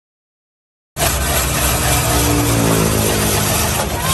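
Electric ice-shaving machine running, its blade grinding a block of ice into shaved ice for cendol: a loud, steady mechanical noise with a hiss that starts abruptly about a second in, with a falling tone in the middle.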